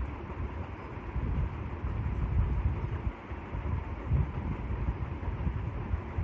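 Low, uneven rumbling background noise with no speech.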